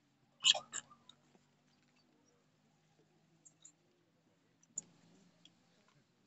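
Two sharp clicks about a third of a second apart near the start, then a few faint ticks and one more click near the end, over a faint steady low hum.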